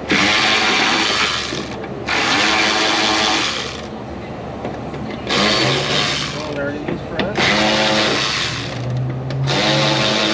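Right-angle power drill spinning out T15 Torx fender liner screws. It runs in five bursts of about a second and a half to two seconds each, with short pauses between.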